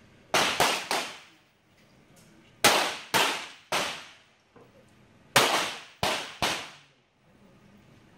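.22LR semi-automatic target pistols firing: sharp cracks in three clusters of three, each cluster under a second long and about two and a half seconds apart, each crack ringing briefly under the range roof.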